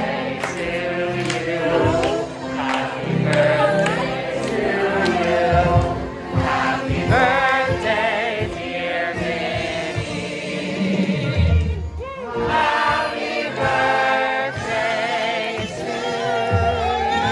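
Many voices singing together over music, with a brief drop about twelve seconds in.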